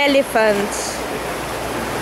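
Pond water splashing and sloshing around a bathing elephant as it is scrubbed, a steady wash of water noise. A voice says a few words at the start.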